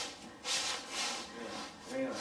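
Low classroom murmur: soft, indistinct student voices and rustling, with no clear words.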